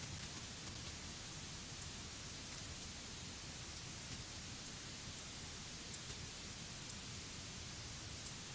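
Steady low hiss of background noise: room tone on an open microphone, with no distinct sounds.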